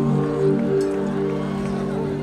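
Electronic keyboard holding a sustained chord of several steady notes as a live band starts a song.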